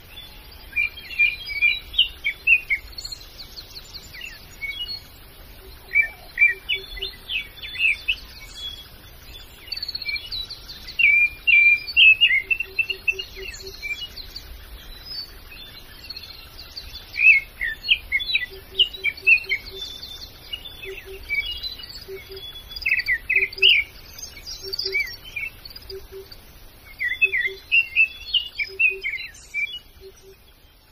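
Birds chirping and singing in quick, varied phrases that come in bursts with short pauses between. A faint low pulsing note repeats at a steady spacing underneath in the second half.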